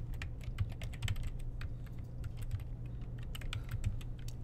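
Typing on a computer keyboard: an irregular run of keystroke clicks as a line of code is entered.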